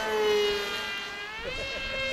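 Whine of the FF-Demon RC foam plane's 1800 kV Zing brushless electric motor spinning a 7x5 propeller on 4S power. Its pitch sinks gradually as the plane passes, then rises again about a second and a half in and holds steady.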